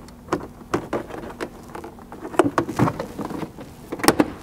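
Plastic trim clips popping and a plastic hatch trim panel clicking and knocking as it is pried and pulled free: a string of irregular sharp clicks, the loudest cluster about two and a half seconds in.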